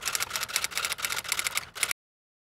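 Typing sound effect: a rapid run of keystroke clicks as a line of text is typed out, stopping abruptly just before the end.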